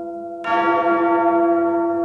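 A large bell tolling: the previous stroke is still dying away when a fresh strike about half a second in sets it ringing again, with a long, steady ring.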